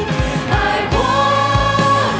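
A contemporary Christian worship song with a band and several singers in Chinese, over a steady drum beat of about three strokes a second. The voices hold a long sung note in the second half.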